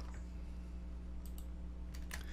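A few faint clicks from computer input while code is being edited, most of them a little past the middle, over a steady low electrical hum.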